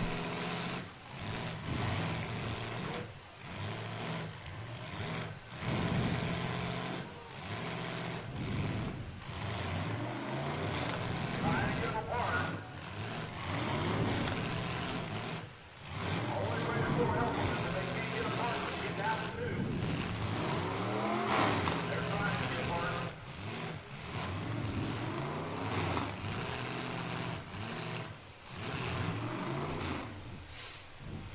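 Demolition derby car engines running and revving, their pitch rising and falling several times as the jammed-together cars push against each other. The sound drops out briefly a few times.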